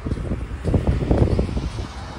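Wind buffeting the microphone outdoors: a rough, low rumble that swells and fades in gusts.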